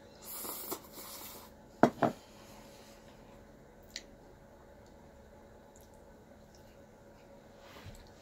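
A mouthful of ramen noodles being slurped and chewed, then two sharp clicks of chopsticks against a bowl about two seconds in, and a faint tick near four seconds.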